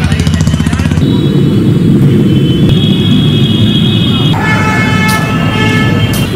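Road traffic close by: a motor vehicle engine running with a steady low rumble, and vehicle horns sounding, one held high tone from just under three seconds in and a fuller horn from about four seconds in to the end.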